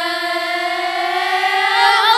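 A girls' choir singing a nasheed, holding one long note together, its pitch sagging slightly and then easing back up.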